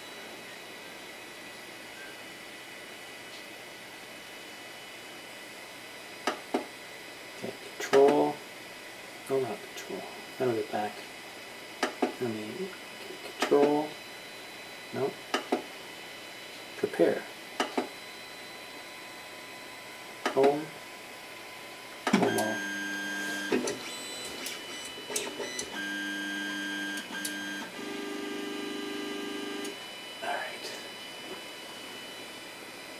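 Anycubic Mega Zero 3D printer's stepper motors driving the axes, about 22 seconds in, in three separate moves. Each move is a steady whine at its own pitch, with a few clicks. The moves are typical of the printer homing its axes before bed levelling.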